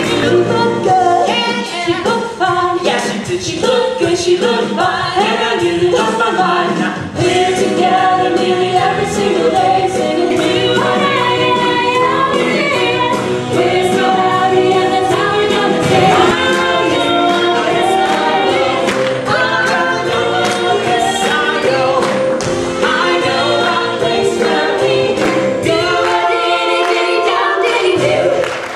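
Several voices singing together in harmony over a backing band with a steady beat, a rocking 1960s-style pop number from a stage musical.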